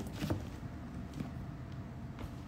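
Quiet room background: a low steady rumble with a few faint taps and rustles.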